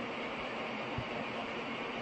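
Steady machinery noise from filament production lines running, with a single soft low thump about halfway through.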